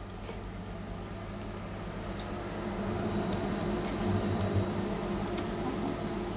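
Potato and parsnip latkes frying in butter and oil in a coated pan: a steady sizzle that grows a little louder about two seconds in, over a low steady hum, with a few light clicks of metal tongs.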